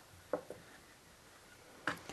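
Cloth strips being handled and woven through a cigar-box loom: a quiet stretch with two short soft handling sounds about a third of a second in, and another just before the end.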